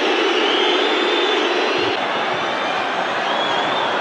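Football stadium crowd, a steady roar from the stands.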